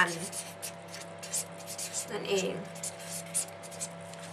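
Pen scratching on paper in quick short strokes, with a brief murmur from a woman's voice about two seconds in, over a steady low electrical hum.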